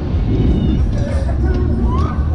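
Dense wind noise on the microphone of a camera riding the spinning Superbowl fairground ride, with fairground music and voices mixed in.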